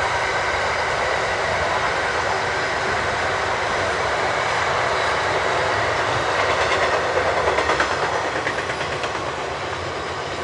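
Double-stacked container wagons of a long freight train rolling past: a steady rumble and rattle of steel wheels on the rail, with a quick run of clickety-clack from the wheels about seven seconds in.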